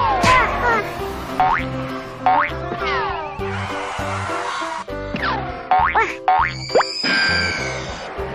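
Children's cartoon background music with a steady beat, overlaid by cartoon sound effects: a string of quick boings that slide up and down in pitch, a hissing whoosh about halfway through, and a wavering high tone near the end.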